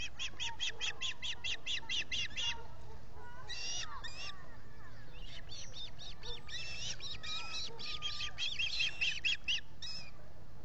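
Ospreys calling from the nest: fast runs of short, high, whistled chirps, about six a second, in two bouts, the first ending about two and a half seconds in and the second starting about six seconds in, with a few scattered calls between.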